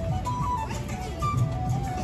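Background music: a melody moving in held, stepping notes over a steady low accompaniment.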